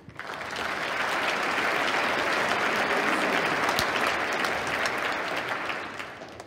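Audience applause that builds within the first second, holds steady, and tapers off near the end.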